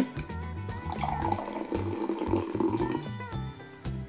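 A can of pineapple Fanta popped open with a sharp click, then the fizzy soda poured into a glass, with background music and a steady beat throughout.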